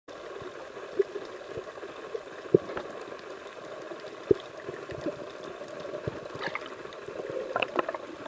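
Underwater ambience picked up by a camera below the surface: a steady hiss with a few sharp clicks, the loudest about one, two and a half and four seconds in, and a run of quicker clicks near the end.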